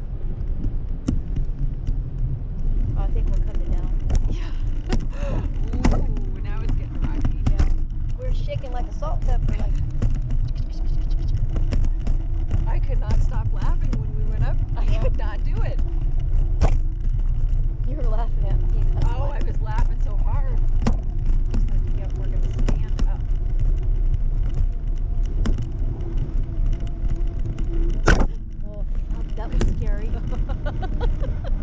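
Wind buffeting a camera microphone high on a parasail, a steady low rumble with faint voices through it now and then. Scattered sharp clicks come over it, one louder near the end.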